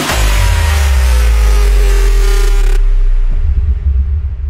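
Electronic music transition: a deep, sustained bass swell under a bright upper layer that cuts off suddenly about three seconds in, leaving only a low rumbling bass.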